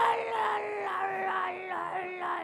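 A man's long, drawn-out vocal wail into a handheld microphone, done as a comic impression: one held note sliding slowly down in pitch.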